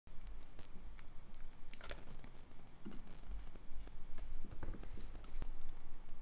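Scattered light clicks and small handling knocks, irregular, over a steady low hum.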